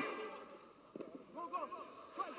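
Faint shouting from footballers on the pitch, with a ball being kicked about a second in. No crowd noise under it.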